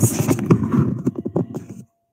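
Handling noise from the recording device as it is grabbed and tilted down toward the counter: a rapid, irregular run of knocks and rubbing clatter close to the microphone, stopping just before two seconds in.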